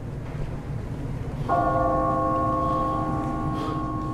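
A large clock-tower bell strikes once about a second and a half in and keeps ringing, its several tones slowly fading, over a low rumble.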